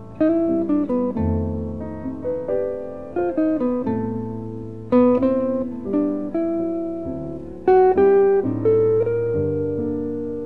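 Jazz duo of piano and guitar playing, the guitar most prominent: single notes and chords that are picked sharply and left to ring and fade, over held low notes.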